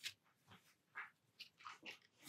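Faint, short scratching ticks of a paper trimmer's blade cutting through watercolour paper, a handful of them scattered through the two seconds.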